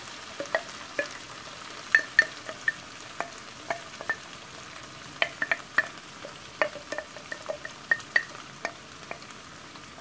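Seasoned ground beef sizzling softly in a skillet with the heat turned down low, with irregular small pops and crackles as jarred cheese dip is poured over it.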